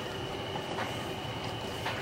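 Steady background hiss with a faint, constant high-pitched whine, with no distinct events.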